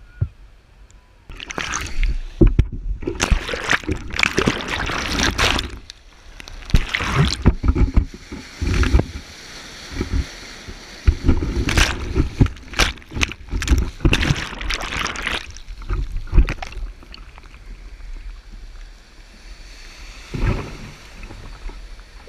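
Breaking surf and whitewater rushing and splashing over a GoPro camera held low in the waves, in loud, irregular surges a second or two long. After about sixteen seconds it settles to a lower wash, with one more surge near the end.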